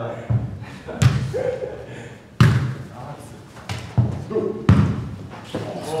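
A football being kicked, headed and bouncing on a hard indoor floor during a football tennis rally: about seven sharp thuds at irregular intervals, the loudest about two and a half seconds in and near the end, echoing in a large hall. Players' short shouts come between the hits.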